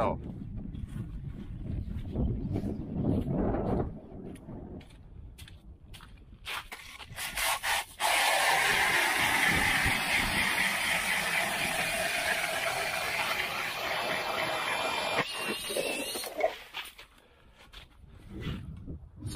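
Cordless drill spinning an ice auger through lake ice: a loud, steady grinding scrape of the blades cutting ice that starts about halfway in, runs for about eight seconds and stops suddenly shortly before the end. Before it come a few handling knocks.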